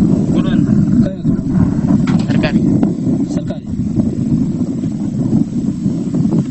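A vehicle engine running steadily, with indistinct voices speaking briefly now and then over it.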